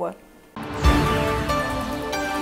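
A TV station's logo ident music starts about half a second in, after a brief lull, with a deep hit and then sustained pitched notes. The end of a newsreader's last word is heard at the very start.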